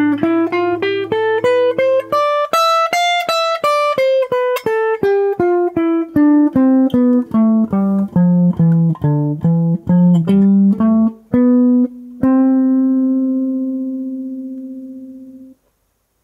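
Clean hollow-body electric guitar playing a major scale one note at a time, about three notes a second. The run climbs for about three seconds, then comes back down below its starting note. It ends on a low note left ringing and fading for about three seconds.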